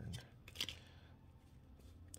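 Trading cards sliding against each other as one card is pulled from the front of a hand-held stack and moved to the back: two short papery rasps in the first second, then faint.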